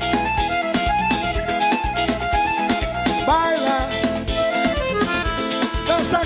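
Instrumental break in a Brazilian dance song: a melodic lead line with a pitch bend a little after three seconds, over a steady drum beat, with no singing.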